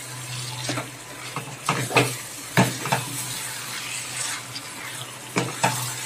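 Chicken pieces and potatoes sizzling in masala in a frying pan as a spatula stirs and turns them, scraping and knocking against the pan several times. A steady low hum runs underneath.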